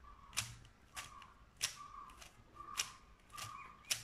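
A plastic 3x3 Rubik's cube having its layers turned by hand, clicking about seven times, each click a little over half a second after the last.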